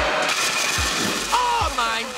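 Tesla coil discharging: a loud, even electrical buzz of sparks arcing through the air, with voices coming in over it about a second and a half in.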